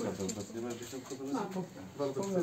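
Indistinct talk: several people speaking in low voices at once, no words clear.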